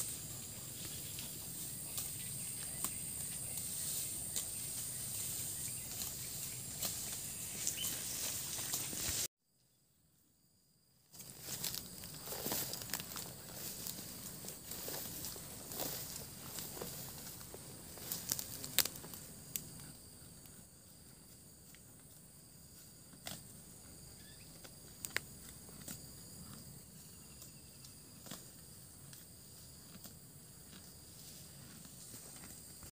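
Bali cow grazing in tall grass: scattered short snaps and rustles of grass being torn off, over a steady high hiss. The sound drops out to near silence for about two seconds, a little after nine seconds in.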